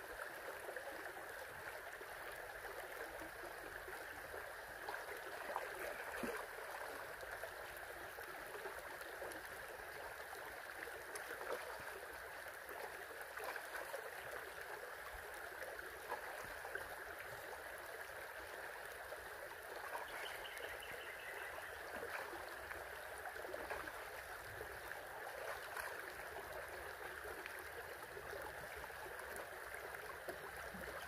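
Shallow creek water running steadily over rocks, with a few brief small splashes.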